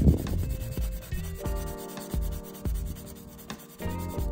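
Sanding stick rubbed back and forth over the styrene plastic roof edge of a model car body, in short scratchy strokes, loudest at the start.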